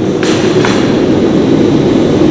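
Forge burner running with a loud, steady roar, with two sharp clicks within the first second.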